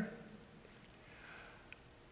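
A faint breath drawn in through the nose about a second in, in an otherwise quiet pause, followed by a tiny mouth click.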